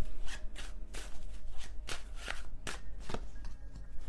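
A tarot deck being shuffled by hand: a run of quick, irregular card flicks and taps, over soft background music.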